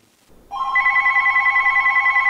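Cordless phone handset ringing: one electronic ring that warbles rapidly, starting about half a second in and lasting about two seconds.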